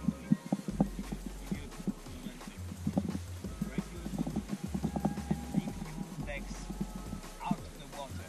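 Muffled voice talking, dulled by a GoPro's waterproof housing, with many short clicks and knocks from the housing throughout.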